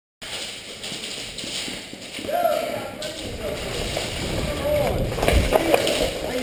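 Indistinct voices calling out, with no clear words, over the shuffle and footfalls of players moving on a concrete floor. There is a run of heavier thumps in the last second.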